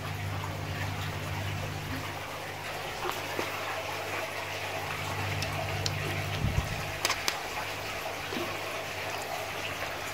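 Water sloshing and trickling in a shallow tub as a hand moves through it, over a steady low hum that stops about seven seconds in, with a few light knocks.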